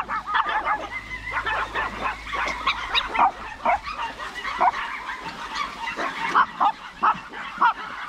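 A pack of chihuahuas yapping and barking over one another in a dense run of short, high barks. It is the sound of aggression toward a newly arrived dog on their territory.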